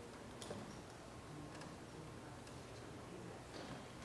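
Faint room hum with a few light, irregularly spaced ticks and rustles from papers and pens being handled at a desk.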